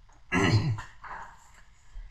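A man clears his throat once, about a third of a second in: a short, rough vocal sound that falls in pitch.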